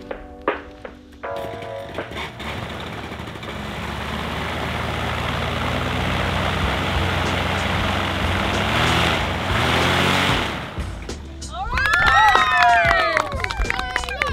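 A paramotor's two-stroke engine and propeller running with a steady rush, growing louder for several seconds and then dropping away. Near the end a group of children shout and cheer.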